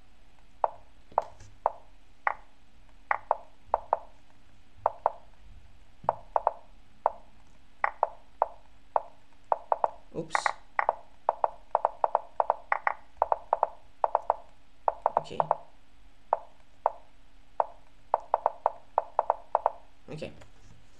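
A fast, irregular string of short wooden knocks from the chess site's piece-move sound, clicking off up to three or four times a second as both players move rapidly in a bullet time scramble.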